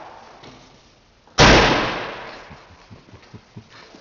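Rear tailgate of a Mercedes estate ambulance slammed shut once, about a second and a half in: a loud bang that echoes and dies away in the hall. A few faint taps follow.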